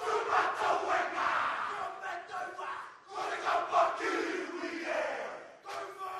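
A group of men chanting and shouting a haka in unison, loud shouted phrases broken by a short pause about three seconds in and another near the end.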